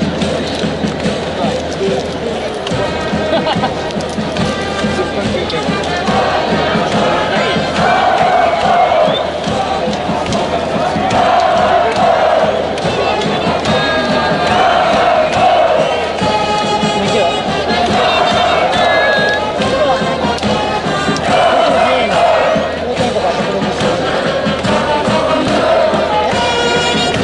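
A high school baseball cheering section: a brass band plays a cheer song while a mass of students chant and shout along in rhythm, louder from about six seconds in.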